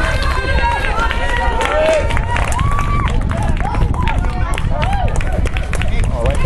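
Several people's voices talking and calling out over one another, with a steady low rumble underneath.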